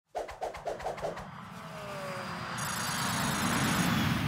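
Logo intro sound effect: about five quick pulses in the first second, then a whoosh like a passing aircraft that swells steadily louder as it builds toward the logo.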